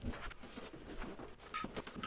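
A few light taps and knocks, scattered and irregular, of small objects being handled and set down on a desk, with faint rustling between them.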